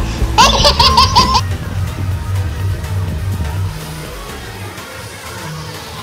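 A baby laughing in a short burst about a second long near the start, over background music with a bass line.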